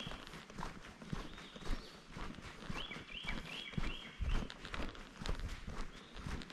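Hiker's footsteps on a dirt and leaf-litter forest trail, irregular steps throughout. About three seconds in, a bird sings a quick run of four repeated whistled notes.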